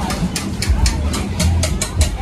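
Music with a heavy bass beat and quick, sharp ticks of a beat, about five or six a second, playing over the chatter of a crowd.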